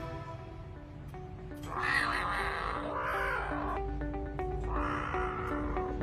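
A leopard cat kitten only a few days old calling in three short, harsh cries, about a second apart at first, over soft background music.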